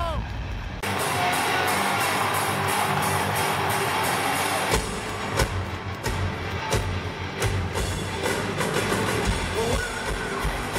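Live rock band playing in an arena, recorded from the floor: a loud wash of sound opens, then drums and bass come in about five seconds in with steady hits.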